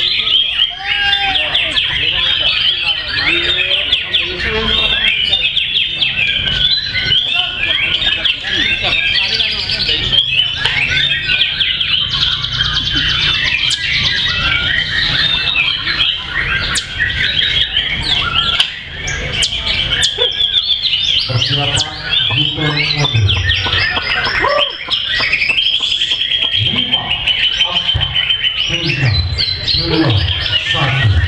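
White-rumped shamas in contest song: a dense, unbroken stream of rapid chirps, trills and whistles.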